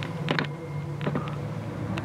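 Steady low hum inside a car cabin, with a few brief clicks and rustles near the start and about a second in, as a handheld phone camera is moved.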